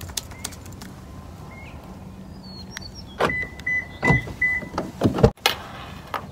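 A car being got into: a series of handling knocks and thumps, four short beeps from the car's chime about halfway through, and a door shutting with a thump near the end.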